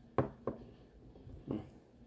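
Three light knocks from a small rock and a brush being handled on a plastic-covered table: two close together near the start, one more about a second later.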